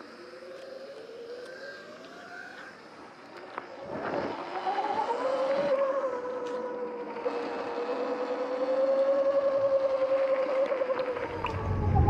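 Electric motorbike's motor whine rising in pitch as it accelerates, then holding steady while cruising and easing off near the end, with tyre noise on gravel and a few knocks. A loud low rumble comes in just before the end.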